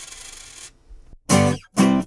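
A dropped coin clinking and ringing out, fading away within the first second. Two short pitched sounds follow near the end.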